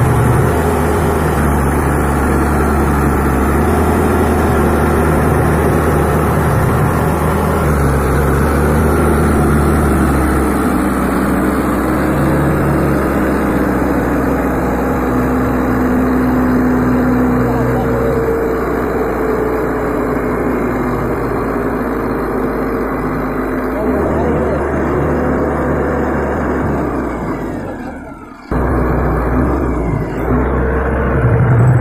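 Mahindra tractor's diesel engine running steadily, with the level dipping and breaking off briefly near the end.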